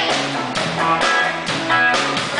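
A live rock band playing, with electric guitars over a drum kit.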